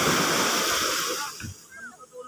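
Surf breaking on a sand beach, a loud even rush of water that dies away about a second and a half in.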